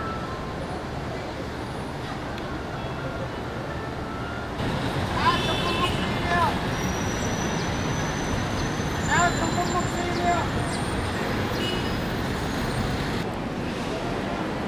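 Steady road traffic noise from a city street, stepping louder about four and a half seconds in, with a few short higher-pitched sounds over it twice.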